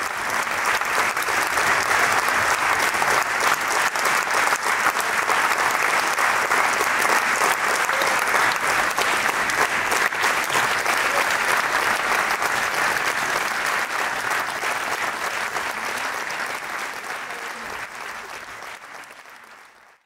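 Theatre audience applauding steadily, a dense patter of many hands clapping that fades away over the last few seconds.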